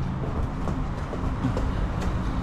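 Steady low rumble, with faint footsteps on outdoor concrete stairs.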